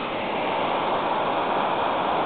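Steady rushing of the Arda river's flowing water.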